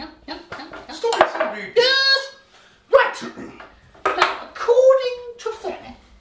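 Mostly voices talking and exclaiming, with a few light clinks of a metal spoon against crockery.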